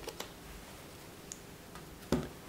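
A quiet room with a few faint clicks: a pair in quick succession at the start and a single small one a little past a second in.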